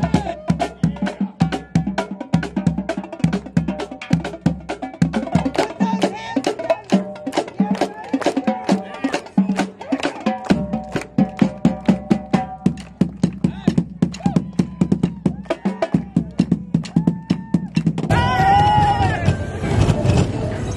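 A marching drum line playing snare and bass drums in a fast, driving cadence, with sharp stick clicks among the drum strokes. About eighteen seconds in the drumming gives way to music.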